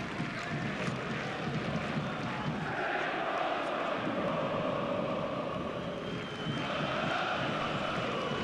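Live sound of a football match in a stadium without spectators: a steady background hum with distant shouts from the players on the pitch.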